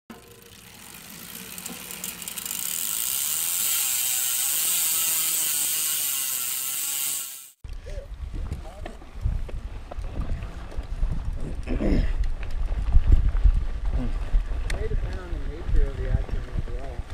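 For about the first half, a hiss with wavering tones builds up over a couple of seconds and cuts off suddenly. Then comes a mountain bike riding along a dirt trail: wind rumble on the chest-mounted camera, tyre noise, and rattles and clicks from the bike, with riders' voices now and then.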